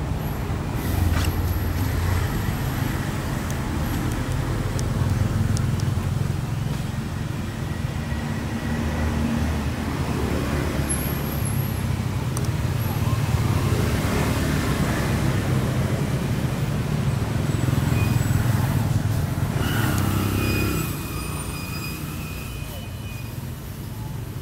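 Motor vehicle engine running close by, a steady low rumble that drops in level about three quarters of the way through.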